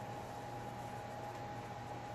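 Steady hiss with a constant thin hum underneath: room tone, with no distinct sound events.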